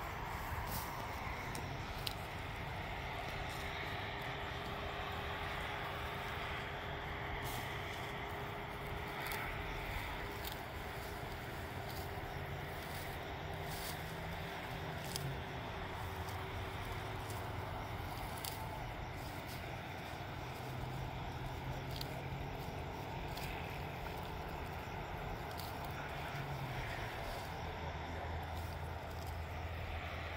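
Weeds and grass being pulled up by hand from dry, stony soil: scattered short rustles and snaps of stems throughout, over a steady low background rumble.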